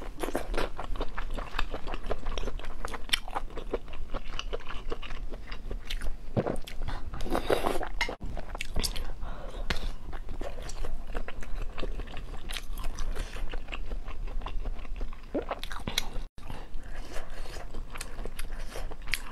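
Close-miked biting and chewing of pieces of hotpot food taken from a spicy broth, a dense run of small mouth clicks and smacks throughout, a little louder about seven seconds in.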